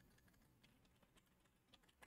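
Near silence with a few faint, scattered computer keyboard keystrokes.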